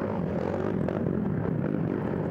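Racing ATV engines running steadily as the quads pass along a wooded trail.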